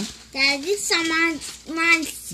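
A young child's voice singing three drawn-out, high-pitched notes.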